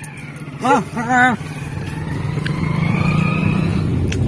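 Car engine heard from inside the cabin as the car pulls away, its steady hum growing louder and rising slightly in pitch over the last two seconds. Two short called words come about a second in.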